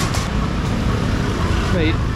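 Motor scooter traffic in a congested street: a steady low engine rumble from small motorbikes passing close.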